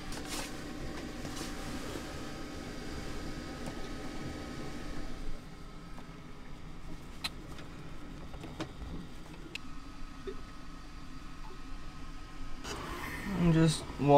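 A steady low hum with a few light clicks of hand tools being handled on the open engine in the middle; a man starts speaking near the end.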